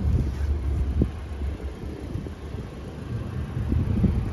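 Low, uneven rumble of wind on a phone microphone outdoors, with a faint click about a second in.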